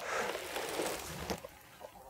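Plastic tarp rustling and crinkling as it is gathered up and hoisted with a load of cut mustard plants, dying away near the end.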